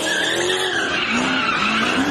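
A car spinning donuts: tyres squealing and skidding on the pavement while the engine revs in short, repeated rising pulls.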